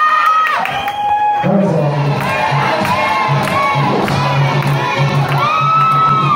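Small arena crowd cheering and shouting, with many high children's voices among the shouts. A low pulsing tone runs underneath from about a second and a half in.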